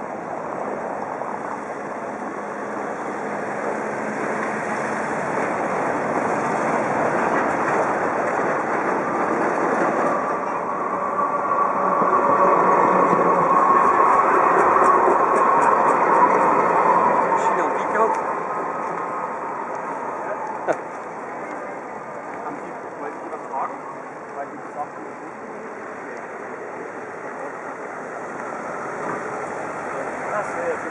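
Busy street ambience: indistinct crowd chatter under the steady noise of traffic, with a passing vehicle swelling to its loudest in the middle and fading away. A few sharp clicks follow in the second half.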